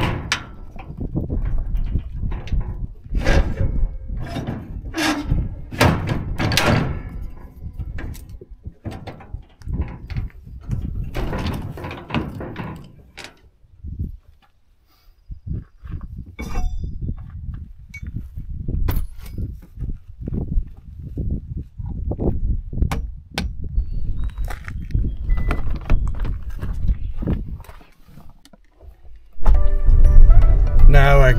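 Irregular metal clanks, knocks and rattles from a utility trailer's coupler and hitch being worked by hand at an SUV's tow hitch, with a quieter pause about halfway through.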